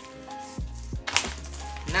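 Soft background music with held tones, and a brief clatter of frozen plastic-wrapped meat packs being handled about a second in.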